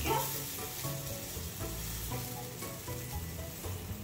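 A buttered sandwich sizzling steadily on a hot stovetop grill pan as it toasts.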